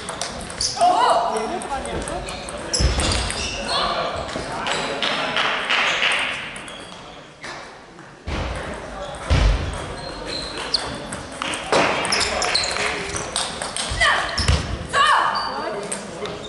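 Table tennis ball clicking off rackets and table during doubles rallies, echoing in a large sports hall, with voices and shouts from around the hall.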